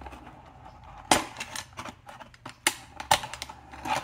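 Utility knife cutting at a packaging tie and the cardboard tray holding a toy, with a few sharp snaps. The loudest snap comes about a second in, and two more come close together near the end.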